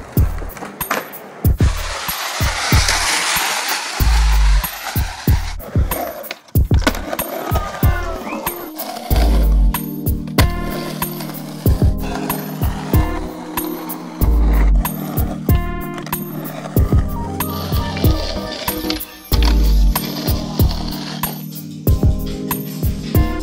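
Music with a steady beat and deep bass hits about every five seconds, mixed with skateboard sounds: wheels rolling on concrete and the board popping and landing.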